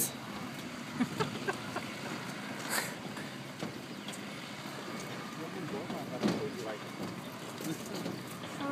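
Footsteps and light knocks on the steel deck plates of a suspension footbridge over a steady outdoor background, with faint voices a little after the middle.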